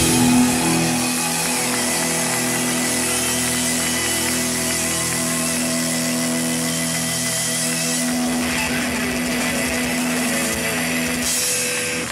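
Live rock band's closing chord: a last loud hit with drums at the start, then the electric guitars hold one chord that rings on steadily and cuts off just before the end.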